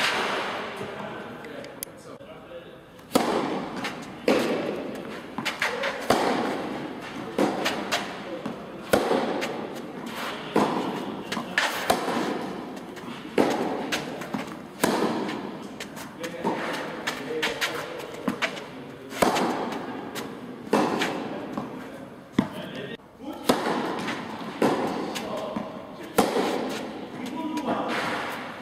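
A tennis rally in an indoor hall: rackets striking the ball and the ball bouncing, a sharp echoing hit about every one to one and a half seconds.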